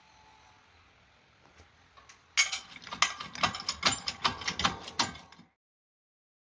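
A rapid, irregular run of sharp mechanical clicks and knocks, several a second, starting a little over two seconds in and lasting about three seconds before it cuts off suddenly.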